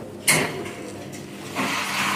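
Bar ambience: a sudden clatter about a quarter second in, then a steady mechanical rattle over a low hum, growing louder near the end, as of bar equipment and glassware being worked.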